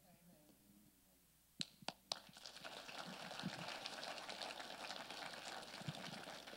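A small congregation applauding: a few single claps about a second and a half in, then steady clapping from many hands.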